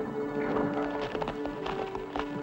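Background music with long held notes over a horse's hooves clip-clopping at a walking-to-trotting pace.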